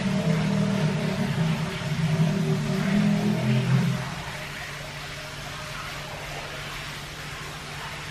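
Steady machinery hum with a hiss, as of glasshouse ventilation fans. The hum is louder and fuller in the first half, then drops suddenly about four seconds in to a quieter, even drone.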